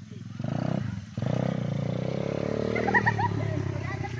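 A small ATV (quad bike) engine running under throttle as the ATV drives up a dirt track, its pitch rising slowly. It dips briefly about a second in, then picks up again.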